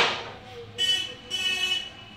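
A sharp knock at the start, then two short toots of a vehicle horn, the second a little longer than the first.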